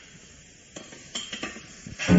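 A telephone receiver being hung up: a few light clicks and clatters starting about three-quarters of a second in, over faint hiss.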